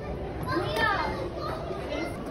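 Children's voices in the background, with one child's high, sliding call about half a second in over a general hubbub.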